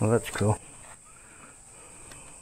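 A man's short two-note voiced hum or murmur at the very start, then a low, quiet background with a faint steady high-pitched hiss.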